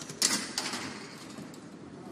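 Faint noise of an empty fight arena, with a brief clatter of knocks about a quarter of a second in.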